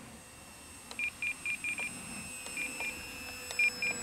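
Short electronic beeps from a radio-control transmitter's trim switch, typical of up-elevator trim being clicked in: five quick beeps about a second in, then two pairs later on.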